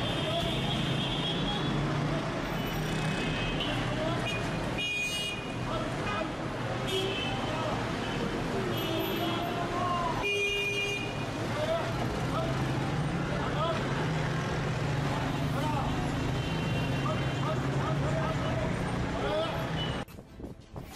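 City street sounds: traffic noise with short car-horn toots and people's voices.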